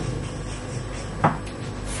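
Steady room noise with a single short knock a little over a second in.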